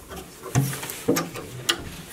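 Hands working the clasp and lid of a wooden storage trunk: three short clicks and knocks about half a second apart.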